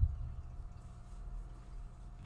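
Quiet room tone: a low steady hum with a faint steady higher tone above it, and nothing else happening.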